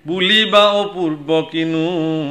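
A man's voice chanting a devotional verse in a sung, melodic style, holding long notes that bend and waver in pitch, with two brief breaks for breath.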